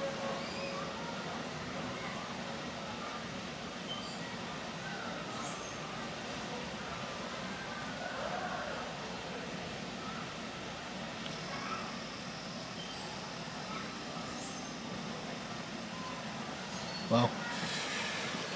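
Lakeside outdoor ambience: a steady low hum with faint, distant voices of people, at a fairly low level. A boat horn's long note cuts off right at the start.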